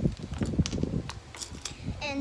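Miniature toy dishes being handled and picked out of a plastic bag: a rustle with several light clicks from about half a second in.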